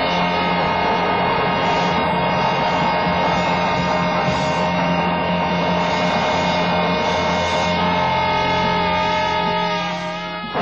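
A live band's amplified final chord held as a steady, hum-like drone of several sustained tones, starting to fade near the end.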